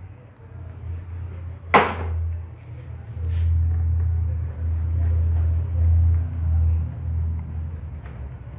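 A single sharp click about two seconds in, then an uneven low rumble of handling noise while a clamp-on cable lubricator is fitted and adjusted on a motorcycle control cable.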